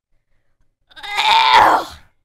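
A singer's loud, strained wordless yell, starting about a second in and dropping in pitch as it ends.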